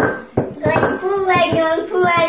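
A ceramic bowl knocked twice against a wooden floor by a cat's paw, then a long drawn-out meow from the hungry cat demanding food.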